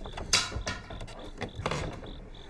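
Old wooden door being unbarred and swung open: a handful of sharp wooden clacks and rattles, the loudest about a third of a second in.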